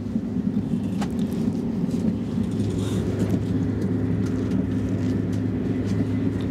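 Steady low rumble of a high-speed train's carriage interior while the train runs, with a single click about a second in.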